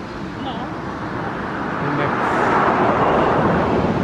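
Twin-turboprop airliner on its takeoff roll, engines and propellers at full power; the rushing noise swells and grows much louder from about halfway through.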